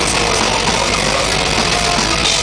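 Death metal band playing live: distorted electric guitars and drums as a dense, unbroken wall of sound, heavily overloaded and harsh in the recording.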